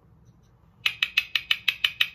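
Make-up blending brush dabbed quickly into a plastic jar of loose translucent powder: about ten short, sharp clicks, roughly nine a second, starting about a second in.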